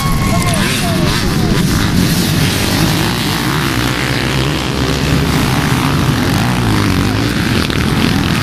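A large pack of off-road dirt bikes riding off together, their engines merging into one loud, steady drone.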